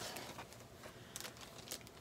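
Faint rustling and crinkling of packaging being handled, with a few light ticks in the second half.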